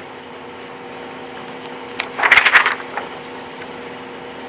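Steady low hum of the meeting room, with a brief rustle about two seconds in.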